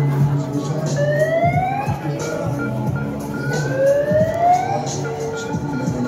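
Two rising siren wails, each about a second long and about two and a half seconds apart, with music playing underneath.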